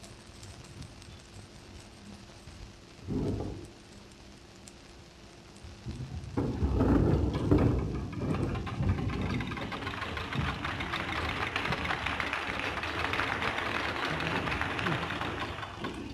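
An orchestra applauding, clapping and tapping bows on their string instruments, breaking out suddenly about six seconds in and going on steadily. Before that there is only the hiss of a 1931 film soundtrack, with one brief sound about three seconds in.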